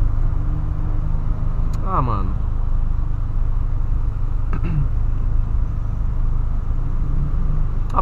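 Steady low rumble of a 2008 VW Polo Sedan's engine idling, heard from inside the cabin. A brief falling vocal sound comes about two seconds in, and a shorter one around the middle.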